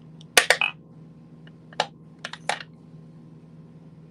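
Several sharp clicks and taps of makeup cases and tools being handled: a quick cluster about half a second in, then single clicks near two and two and a half seconds, over a steady low hum.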